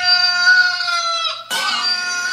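A rooster crowing: one long drawn-out crow ends, and a second long crow begins about one and a half seconds in, each a held call with a slight fall in pitch.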